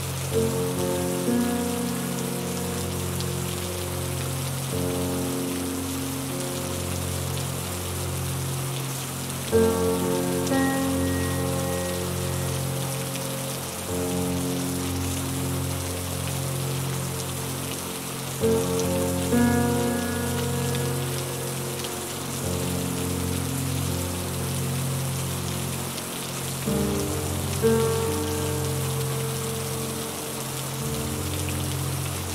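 Steady rain noise mixed with soft, slow ambient music: sustained chords that change about every nine seconds, each change bringing a slight swell.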